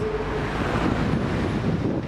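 Steady background noise of city street traffic, an even hum with no distinct events.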